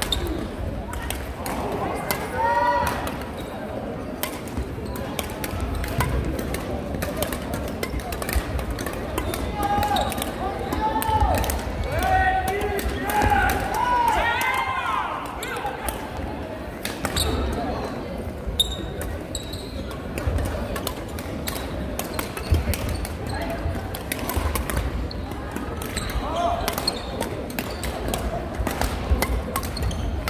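Badminton doubles rally: rackets striking the shuttlecock in sharp repeated cracks, with shoes squeaking on the wooden court floor in short gliding squeals, clustered around the start and in the middle.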